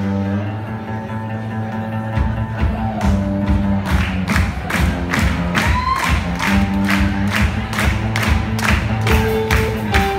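Live rock band playing: electric guitar and bass hold chords, then the drum kit comes in about two seconds in with a steady beat.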